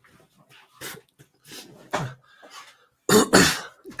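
A single loud cough about three seconds in, after a few faint scattered noises.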